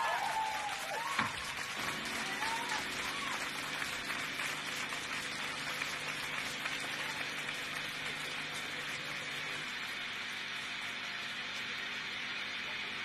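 Live rock concert audience applauding after a song, with a few shouts and cheers in the first few seconds; the clapping then carries on evenly over a faint steady hum.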